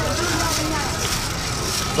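Busy street background noise: a steady low rumble with a wash of distant voices, faint talk in the first half second.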